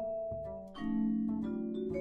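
Vibraphone played with mallets, a run of struck notes ringing on over each other, with upright bass underneath.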